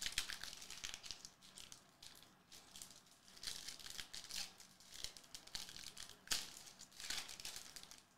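Foil trading-card pack wrapper crinkling and tearing as it is peeled open by hand, a string of faint crackles, busiest about halfway through and again near the end.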